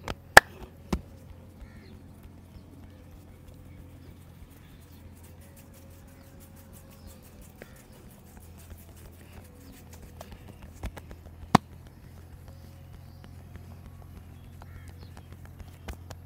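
Sharp strikes of a fist or hand on a man's head during a head massage: three quick knocks within the first second, then two more about eleven seconds in, the second one the loudest. Between the strikes only a low, steady background hum.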